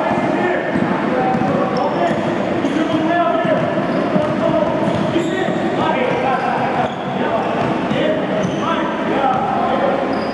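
A basketball being dribbled on an indoor hardwood court, with voices talking in the background.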